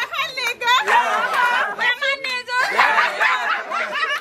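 Several women's voices at once: excited shouting, talking over one another and laughing, high-pitched and overlapping.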